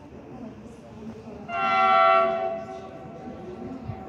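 Horn of an approaching HŽ class 6 112 Končar electric multiple unit: one loud, steady blast of about a second, starting about a second and a half in.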